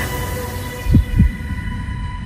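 Tail of a TV news bulletin's closing theme music fading out: a low rumble under steady held tones, with two deep bass thumps in quick succession about a second in.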